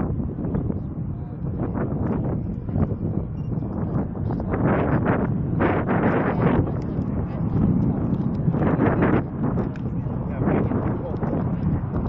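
Wind buffeting the microphone in low, uneven gusts, with the indistinct voices of a crowd of onlookers underneath.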